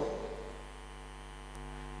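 Steady electrical mains hum from the sound system, with the last of the preacher's voice dying away in the hall just at the start and a faint tick near the end.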